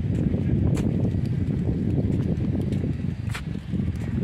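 Wind buffeting a phone's microphone: a steady low rumble, with a couple of brief clicks from the phone being handled.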